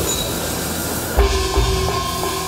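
A small brass gong struck with a padded mallet and left ringing, as its tone is tested; a fresh strike about a second in sets off a long steady ring.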